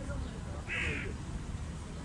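A single short, harsh animal call a little under a second in, over a steady low background rumble.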